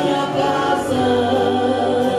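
A Christian song sung by voices in harmony, with held notes changing pitch every half second or so.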